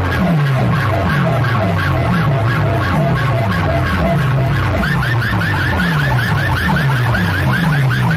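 A competition DJ track played at high volume through stacked sound-box speaker towers. It has a falling bass sweep repeating about twice a second, with siren-like chirps above it that turn into quick rising squeals about five seconds in.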